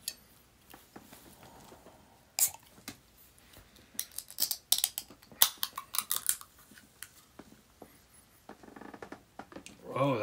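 Aluminium energy-drink can handled and its pull tab worked open: a sharp click about two and a half seconds in, then a run of small metallic clicks and crackles between about four and six and a half seconds.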